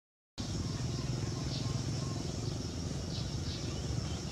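Outdoor ambience: a steady low rumble with scattered short, high bird chirps over it, after a moment of complete silence at the very start.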